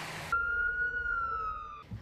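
Emergency vehicle siren holding one high wailing tone that slowly sinks in pitch, then cuts off near the end. It is preceded by a brief steady hiss of outdoor ambience.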